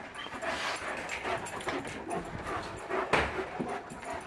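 Dogs panting and moving about as they greet a person, with a short knock about three seconds in.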